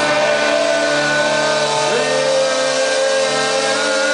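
A live heavy metal band's distorted electric guitars hold a sustained chord, with a quick bend down and back up in pitch about two seconds in.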